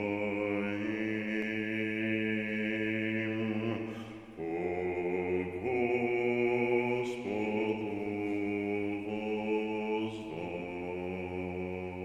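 Slow, sustained chant-like background music: long held chords that move to a new chord about every three seconds.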